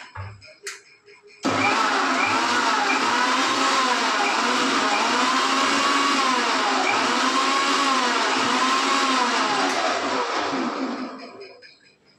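Electric mixer grinder blending watermelon for juice. It switches on sharply about a second and a half in, runs loudly with its motor pitch rising and falling as the load shifts, and winds down near the end.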